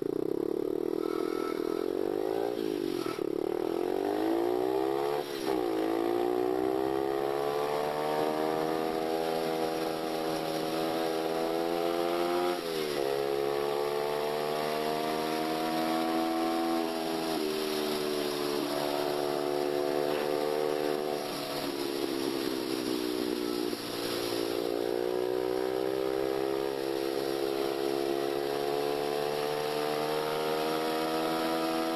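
Small motorcycle engine running under way, its pitch climbing as it accelerates and dropping suddenly several times as the throttle is eased or a gear is changed.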